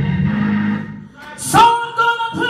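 Live gospel praise-and-worship music with singers and band. A sustained low note fades out about a second in. A loud sung note with vibrato then comes in suddenly about a second and a half in.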